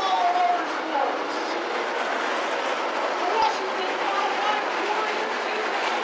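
A pack of dirt modified race cars circling at pace speed, their engines blending into a steady, dense drone, with people's voices underneath.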